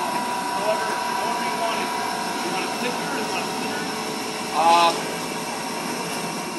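Steady hum of supermarket meat-department refrigeration and ventilation machinery, with faint voices and a short louder bit of talk a little before the end.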